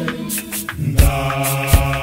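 Gospel choir singing a cappella in clap-and-tap style, punctuated by sharp hand claps. The voices thin out briefly, then come back in full harmony about a second in, with claps roughly every half second to second.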